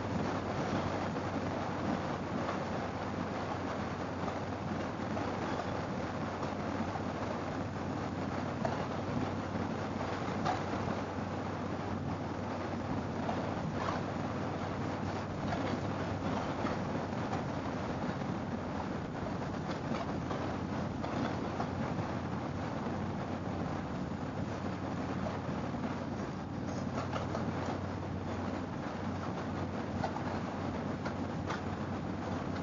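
A Harley-Davidson V-twin cruising steadily at highway speed, heard as a low, even drone under constant wind rush and road noise at a handlebar-mounted camera.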